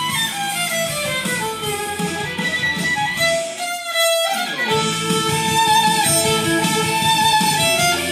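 Violin playing a melody that steps downward over the first few seconds. About halfway through it holds one note briefly before the line picks up again.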